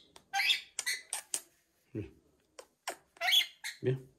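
Rainbow lorikeet giving harsh, screechy squawks: one just after the start, a quick run of short sharp calls around a second in, and another squawk about three seconds in.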